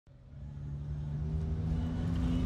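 A low rumbling swell fading in from silence, with a few sustained low notes entering one after another.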